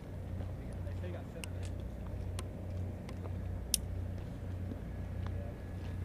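A steady low engine hum that throbs slightly, with a few light clicks of equipment being handled and one sharp click a little after halfway.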